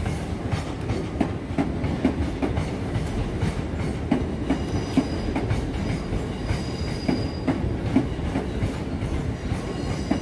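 Southeastern electric multiple-unit train rolling slowly through the station trackwork, its wheels clicking steadily over rail joints and points about two to three times a second under a low rumble. A faint high wheel squeal comes in for a few seconds around the middle.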